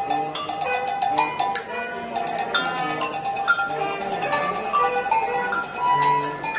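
A live band playing at soundcheck: a drum kit struck in quick, even strokes under a line of bright pitched notes.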